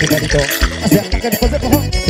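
Live piseiro-style forró band music: keyboard melody over a steady, driving beat.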